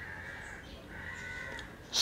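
A bird calling faintly twice in the background, each call about half a second long.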